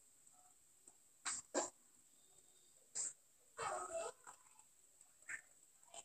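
A dog barking a few times in the background: two quick barks, a third, then a longer, drawn-out yelp, and a last small one near the end.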